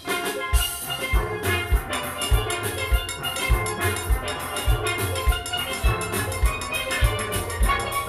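A steel orchestra playing: many steel pans sounding fast ringing notes over a steady low beat about every half second, the full band coming back in strongly just after a brief lull at the start.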